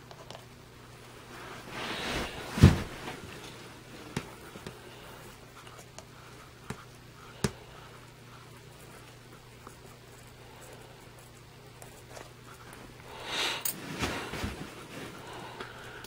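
Quiet handling sounds from metal feeding tongs at a plastic tub: a few sharp clicks and knocks, the loudest about three seconds in, and two soft scuffling swells, one near the start and one near the end, over a faint steady hum.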